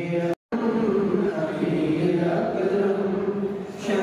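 A man chanting a devotional recitation into a microphone in long, drawn-out held notes. The sound drops out completely for a moment about half a second in, then the chanting carries on.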